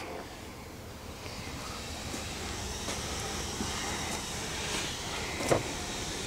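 Low, steady background noise inside a parked car's cabin, with a short click about five and a half seconds in.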